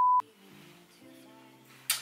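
Steady test-card beep tone, the kind played over TV colour bars, cutting off suddenly just after the start. Faint music with held low notes follows.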